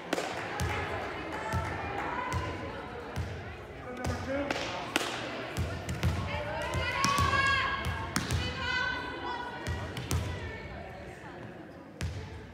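A volleyball bouncing and thudding now and then on a hardwood gym floor, with girls' voices calling and chattering, echoing in the large gym.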